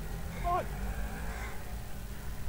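A steady low rumble of wind on an outdoor microphone, with one short spoken syllable about half a second in.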